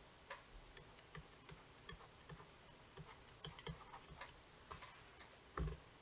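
Faint, irregular taps and clicks of a pen on a drawing surface as lines are drawn, with one louder knock about five and a half seconds in.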